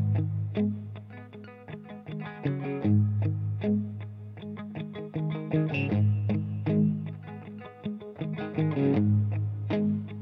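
Left-handed Gibson SG electric guitar with Burstbucker pickups, played through a Headrush modeling pedalboard: slow blues phrases of quickly picked notes over low notes that ring for about a second each.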